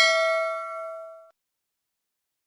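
A bright notification-bell ding sound effect ringing out and fading, then cutting off abruptly a little over a second in.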